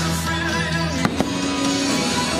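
Fireworks-show music playing, with two sharp firework bangs in quick succession about a second in.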